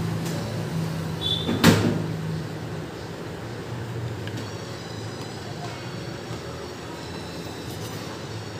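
A single sharp knock about two seconds in, over a low steady hum that fades soon after.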